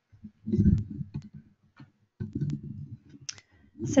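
Handling noise close to the microphone: a scatter of sharp clicks and two spells of soft, low thumping.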